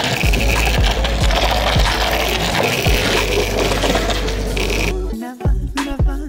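Background music mixed with longboard wheels rolling on asphalt, a rough steady rumble. The rolling noise stops about five seconds in, leaving the music with a voice in it.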